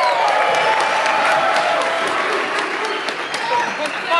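Audience applauding, with a voice or two calling out at first. The applause is dense for about two seconds, then thins to scattered claps toward the end.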